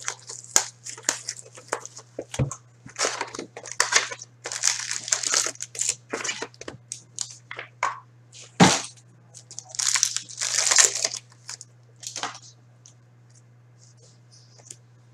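Plastic wrapper of a 2016-17 Upper Deck Ice hockey card pack being torn open and crinkled by hand, in a quick run of crackly rips and rustles, with a couple of sharp knocks against the table. It goes quiet near the end. A steady low hum runs underneath.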